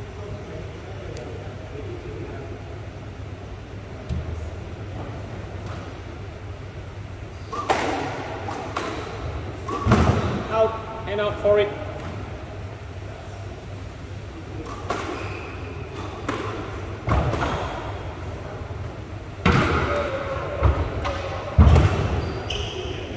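Squash ball being struck by rackets and thudding off the court walls, several sharp hits a second or two apart in the second half, with short squeaks of court shoes on the wooden floor.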